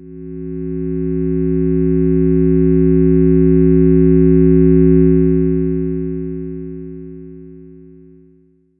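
Line 6 Helix 4 OSC Generator synth block playing a sustained drone chord of several steady tones. The chord swells in over the first seconds, peaks about five seconds in, then fades away toward the end.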